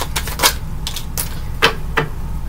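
About half a dozen sharp taps at uneven spacing, the loudest a little past the middle, over a steady low hum.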